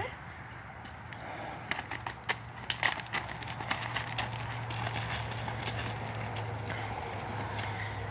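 A horse's hooves on gravel as it is led at a walk: irregular crunching hoofbeats, most of them in the first half, thinning out as it steps onto grass.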